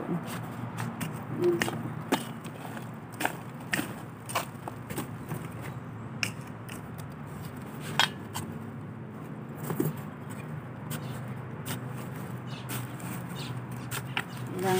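Scattered clicks and scrapes of a hand working the soil and dead plants in a styrofoam planter box, over a steady background noise.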